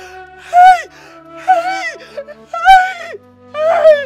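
A woman wailing in grief, about four short cries that each rise and fall in pitch, over steady background music.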